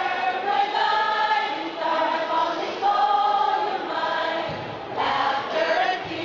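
A choir of mixed voices singing a hymn, holding each note for about a second.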